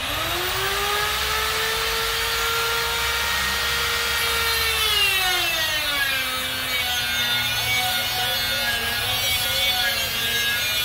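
Electric angle grinder spinning up at the start and running with a steady whine. About five seconds in, its pitch drops and holds lower as the disc bites into a metal bar under load.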